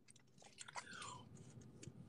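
Near silence, with faint scattered clicks and a short faint falling squeak about a second in.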